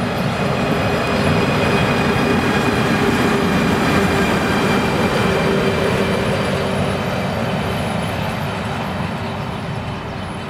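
DB Class 151 electric locomotive running light past at close range: wheels rumbling on the rails under a steady hum. It is loudest a few seconds in and fades slowly as it moves away.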